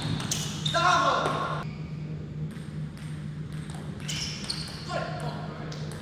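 The end of a table tennis rally: sharp clicks of the ping-pong ball on bat and table right at the start, then a player's short falling shout about a second in as the point is won. Short high squeaks around four seconds, and another brief voice call near five seconds, over a steady low hum in the hall.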